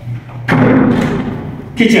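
An interior door thumps once as it is handled, about half a second in, with a short reverberant tail in the bare room.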